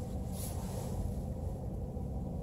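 Ford Fiesta's engine idling, a steady low rumble heard inside the parked car's cabin, running to keep the heater going. A brief soft rustle about half a second in.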